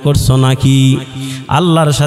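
A man's voice in melodic, chant-like sermon recitation, holding long notes with a pitch that rises and falls near the end, in the sung style of a Bengali waz.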